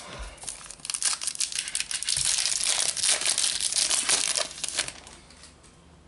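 A foil trading-card booster pack being torn open and its wrapper crinkled and crumpled, a dense crackling from about a second in that dies away about a second before the end.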